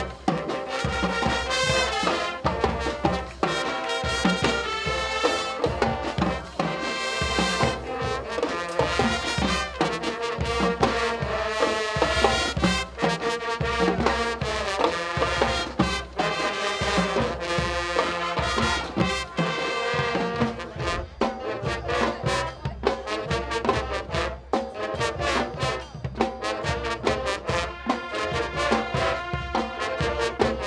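Marching band playing an up-tempo tune, brass section carrying the melody over a drumline keeping a steady beat; the drums stand out more in the last third.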